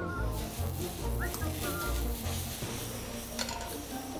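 Background music with a steady low bass line and a few short high melodic notes.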